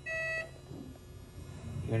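Carestream X-ray system's exposure tone: a single steady beep lasting under half a second, sounding as the held hand switch fires the first exposure of a stitched leg-length series.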